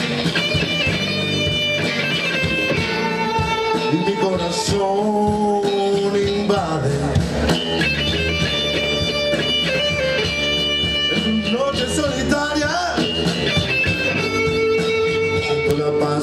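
Rock band playing live: electric guitars with sustained, bending lead notes over bass guitar and a drum kit, an instrumental passage with no singing.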